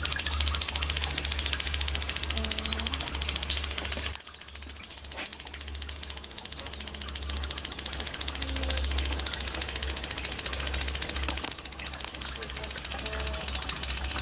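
Home-built waste-oil distillation machine running: a steady low hum with a fast, even mechanical rattle, which dips briefly about four seconds in and then comes back.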